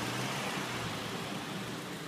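Steady, even background hiss with a faint low hum beneath it and no distinct events.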